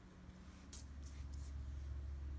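A few faint, short scratches of a fingertip on a scratch-off lottery ticket, over a low steady hum.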